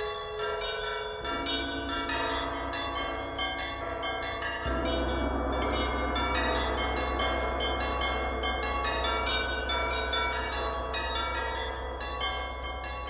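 A percussion quartet plays a fast, dense pattern of struck metal instruments: small bells, bowls and gongs, with many overlapping ringing notes. About a third of the way in, a deep, sustained low rumble joins underneath and holds.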